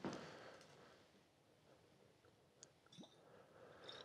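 Near silence: room tone, with a couple of faint clicks about two and a half and three seconds in.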